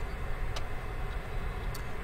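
Two light computer mouse clicks about a second apart, over a steady low hum.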